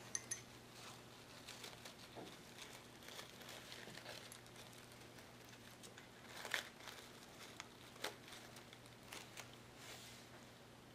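Faint handling noise from an artificial fabric rose and its leaves being worked on a wine glass: soft rustles and a few light clicks, the sharpest about six and a half seconds in and again near eight seconds, over a low steady hum.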